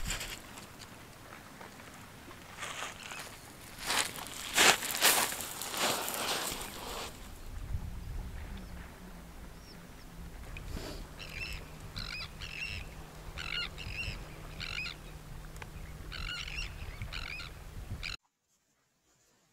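Birds at the shore calling repeatedly in short notes, mostly in pairs, through the second half, over a low steady hum. Before them, about four to seven seconds in, come louder bursts of rushing noise.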